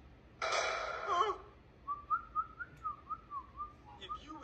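Someone whistling a short, wavering run of notes, about three a second, through the second half. Just before it, about half a second in, comes a brief loud hissy burst with a wavering pitch in it.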